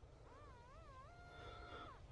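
Faint electronic tone from a Nokta Makro Simplex metal detector sounding on a target: the pitch wavers up and down a few times as the coil moves, then holds steady for most of a second before cutting off.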